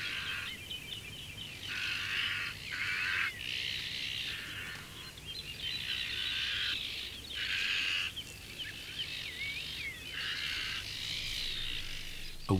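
Azure-winged magpies giving a series of harsh, rasping mobbing calls, each under a second, with thin quick chirps between them. These are alarm calls aimed at a ladder snake.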